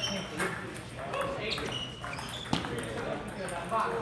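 Table tennis balls clicking sharply off paddles and tables in quick, irregular strokes, with short high pings. One louder crack comes about two and a half seconds in, over a background of voices chattering in a large hall.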